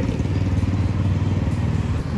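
A road vehicle's engine running close by in street traffic, a steady low hum.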